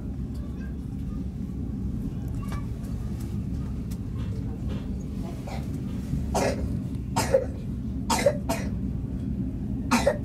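Steady low rumble of a sleeper train running, heard from inside the carriage. In the second half, several short sharp bursts break through, the loudest near the end.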